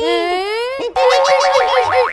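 Cartoon comedy sound effects: a rising pitched glide lasting most of a second, then a fast wobbling boing.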